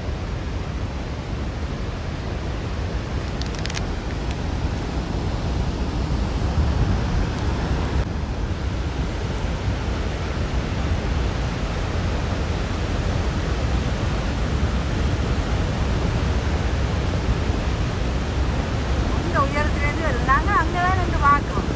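Steady, loud rushing roar of Niagara Falls' falling water, mixed with wind, heaviest in the low end and growing slightly louder over the stretch.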